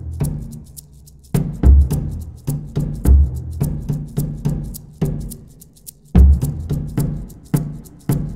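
Percussion beating out a Morse-code rhythm: a deep drum and a higher-pitched drum stand for the dots and dashes, with short high ticks over them. The strokes come in groups, broken by pauses of about a second, one shortly after the start and one about five seconds in.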